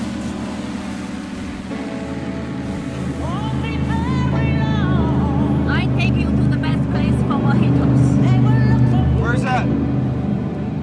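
Offshore racing powerboat's engine running flat out, a steady low drone, under a song with a sung vocal that comes in a few seconds in; the whole grows louder toward the end.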